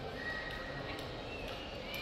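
Airport terminal ambience: a steady background murmur of a large hall with a few faint clicks and thin high tones.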